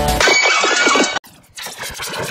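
A short wavering, quavering cry with several bending tones, lasting about a second and cutting off abruptly, followed by a much quieter stretch.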